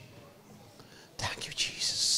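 A man whispering close to a handheld microphone, starting about a second in after a short quiet; near the end the whisper goes into a long hissing 's' sound.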